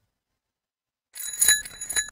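Electric bell ringing for about a second, starting about a second in as its circuit is closed, then cutting off.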